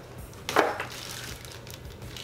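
Handling noise from a plastic-wrapped lightweight tripod being pulled out of its cloth carry bag: rustling, with one sharp knock about half a second in.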